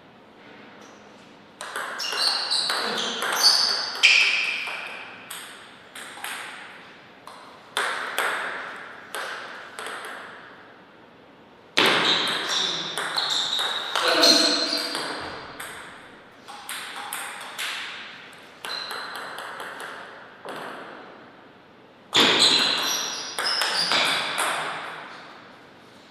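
Table tennis ball clicking off the paddles and the table in quick rallies, each strike trailing off in echo. Three rallies come one after another with short quiet pauses between, the last starting near the end.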